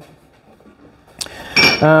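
A sharp click a little over a second in, then a brief metallic clink, from hard metal pieces or tools being handled.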